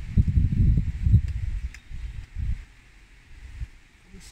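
Wind buffeting the microphone: an irregular low rumble, strongest in the first couple of seconds and then dying down.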